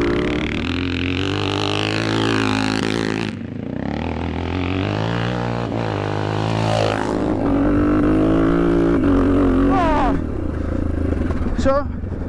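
Yamaha HL500's 500cc single-cylinder four-stroke motocross engine being ridden hard, revving up and down so its pitch repeatedly rises and falls with the throttle.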